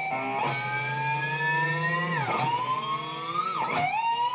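Electric guitar pinch harmonic on an open string, shaped with a Floyd Rose whammy bar: a squealing harmonic that slowly rises in pitch as the bar is let up. It dips sharply and comes back up about two seconds in, and again near the end.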